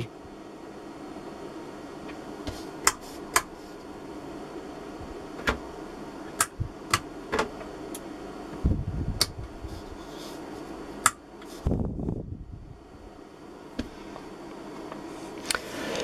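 Steady fan hum with about ten short, sharp clicks scattered through the first eleven seconds as the front-panel knobs and buttons of a digital oscilloscope are turned and pressed. A couple of low, dull bumps come a little later.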